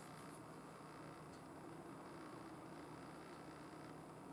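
Near silence: faint steady hiss and low hum of room tone.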